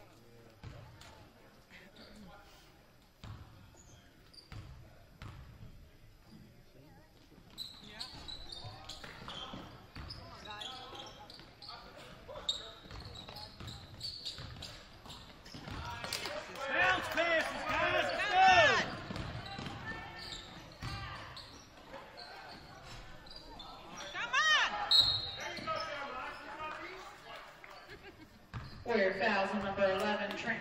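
Basketball being dribbled on a hardwood gym floor, with sneakers squeaking sharply on the court in loud clusters about halfway through and again later, and voices shouting in the gym's echo.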